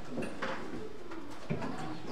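Low, indistinct voice murmuring close to a microphone in a small room, with a short knock about one and a half seconds in.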